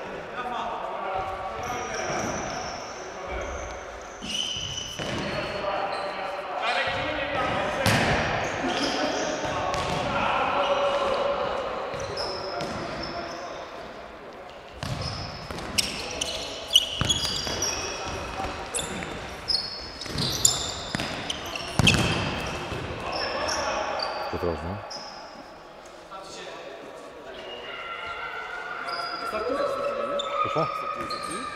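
Indoor futsal play in a large, echoing sports hall: the ball being kicked and bouncing off the hard floor in sharp knocks, shoes squeaking on the court, and players calling out to each other.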